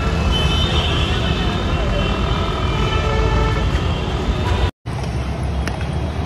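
Road traffic beside a busy street: a steady rumble of passing vehicles with indistinct voices in the background. The sound cuts out for a moment just under five seconds in, then the traffic noise resumes.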